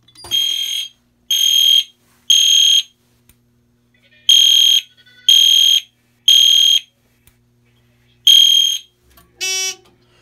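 EST Genesis fire alarm horn sounding the temporal-3 evacuation code: three half-second high-pitched blasts, a pause, then three more. The alarm was set off by the pulled pull station, and the horn codes the pattern itself on continuous power. It stops after the first blast of the third round, and a brief lower buzz follows near the end.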